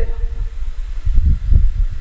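A deep, uneven rumble of background noise with no voice over it.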